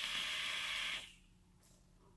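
Air being drawn through a freshly dripped rebuildable dripping atomizer as its coil fires at 75 watts: a steady hiss that stops about a second in.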